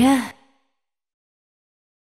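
A woman's last sung note, with the backing track under it, cuts off about a third of a second in, followed by complete silence.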